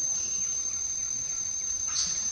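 A steady high-pitched insect drone, with faint outdoor background noise behind it.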